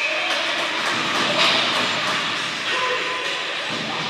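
Steady, echoing noise of an indoor ice hockey game: skates scraping on the ice, with scattered clacks of sticks and puck and a louder rush of noise about a second and a half in.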